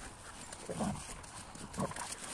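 Two dogs, a kuvasz and a boerboel, play-wrestling: two short grunts, one a little under a second in and one near the end.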